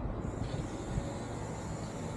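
Outdoor background noise: an uneven low rumble of wind buffeting the microphone, with a faint, steady high hiss above it.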